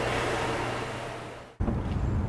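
Steady indoor hum with a low tone that fades away, then a sudden cut about a second and a half in to a low outdoor rumble.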